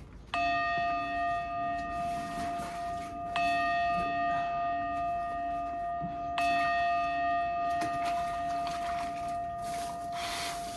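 A bell-like chime struck three times, about three seconds apart, each stroke ringing on and overlapping the one before.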